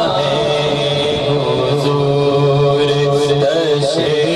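A man singing an Urdu naat into a microphone in long held phrases, with a steady low droning backing underneath.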